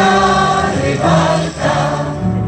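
An amateur choir of mostly women's voices sings a Polish soldiers' song in unison, holding notes that change about every half second, accompanied by an electronic keyboard.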